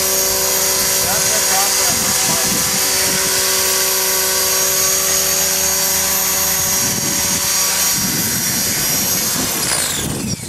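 Align T-Rex 500 electric RC helicopter hovering, its motor and rotors giving a steady, multi-toned whine. Near the end the pitch falls as it lands and spools down.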